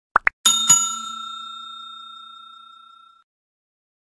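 Sound effects of a subscribe-button animation: two quick clicks, then a bell struck twice in quick succession, ringing out and fading away over about two and a half seconds.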